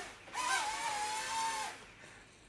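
Micro quadcopter's small electric motors whining for about a second and a half, rising briefly at the start and then holding a steady pitch.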